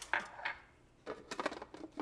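Clear plastic food processor lid being fitted onto its bowl: a brief clatter at the start, then a run of light plastic clicks and knocks in the second half.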